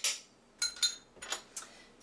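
A spoon stirring a dry brown sugar and cocoa topping in a ceramic bowl, clinking and scraping against the bowl's side about four times.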